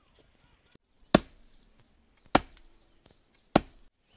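Steel shovel blade chopping into earth, three sharp strikes about a second apart.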